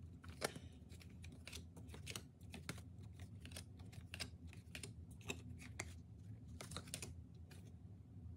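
Tarot cards being handled: flipped, shuffled through and laid on a pile in a quick, irregular run of faint light clicks and taps that stops near the end.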